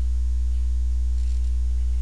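Steady low electrical mains hum with fainter higher overtones, unchanging throughout.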